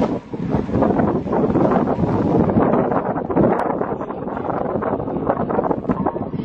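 Wind buffeting a camera microphone, a loud, uneven rumbling rush that rises and falls throughout.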